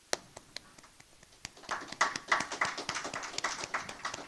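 Light, scattered hand-clapping from a few people. A handful of separate claps comes first, then from about a second and a half in the claps thicken into a ragged, uneven patter.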